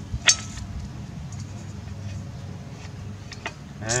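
One sharp metallic click, then a few faint light clicks, as the screw of a BAL light trailer tire leveler is handled and fitted into its cup beneath the tire. A steady low hum runs underneath.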